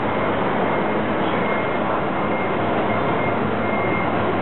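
Steady street traffic noise with a small flatbed truck's engine running close by.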